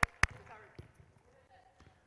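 Footballs being struck on artificial turf: two sharp kicks a quarter second apart, then fainter thuds, with faint calls in the background.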